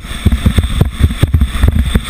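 Skeleton sled sliding at speed down an ice bobsleigh track: steel runners on ice, with rapid, irregular low knocks and rattles from the sled over a steady hiss.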